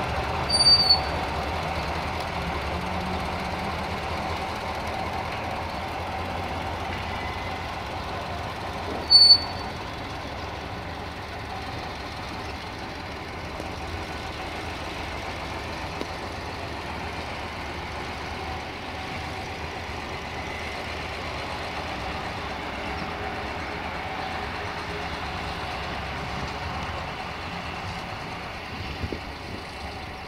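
UAM-215 track maintenance vehicle running steadily on diesel as it shunts with a TAKRAF rail crane wagon. Two short high-pitched toots come about a second in and again at about nine seconds.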